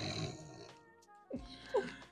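A woman laughing breathily, with a short voiced sound near the end, over faint background music.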